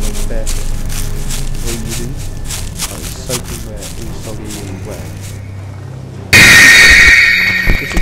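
Film soundtrack: music with a quick, even ticking beat and faint voices. About six seconds in it is cut by a sudden, very loud, harsh shrieking noise that lasts just over a second, and a short thump falls near the end.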